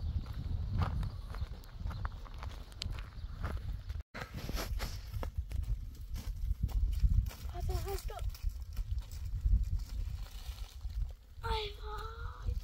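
Footsteps on a stony dirt track and hillside, with plastic bags rustling and a low rumble of wind on the microphone. A child's voice comes in briefly about two-thirds of the way through and again near the end.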